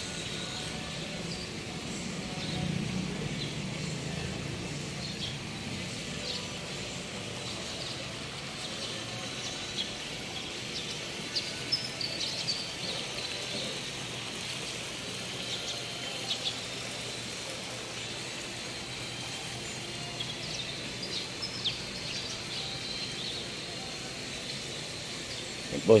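Steady outdoor background noise with scattered short, high bird chirps through the middle; a low rumble swells briefly a few seconds in.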